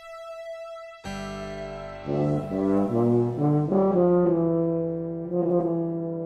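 Solo tuba with electronic tape accompaniment. A sustained synthesizer chord changes suddenly at about a second in; then the tuba plays a short phrase of several notes and settles on a long held note.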